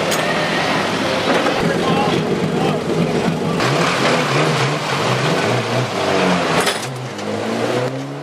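Recovery tractor's engine running as it tows a wrecked banger stock car, amid steady engine and crowd noise, with indistinct voices.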